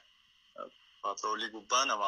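A person's voice speaking in short bursts from about halfway through, over a steady high-pitched hiss.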